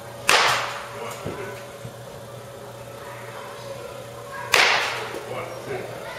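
Two sharp cracks of a bat hitting pitched baseballs, about four seconds apart, each fading out over about half a second.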